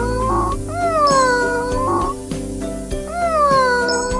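A cat meowing about every two seconds, each call sliding down in pitch and then levelling off, over background music.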